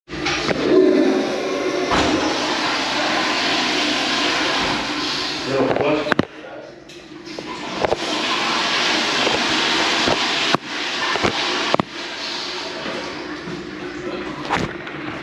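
A loud, steady rushing noise in a restroom. It breaks off about six seconds in and starts again a second and a half later.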